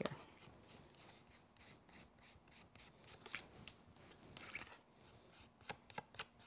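Faint rubbing and rustling of a card panel being handled as gilding wax is worked around its edge with a fingertip, with a few soft ticks scattered through.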